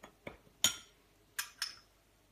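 Metal spoon clinking against small glass bowls and a ceramic mug while ingredients are scooped: several short, light clinks, the loudest a little over half a second in.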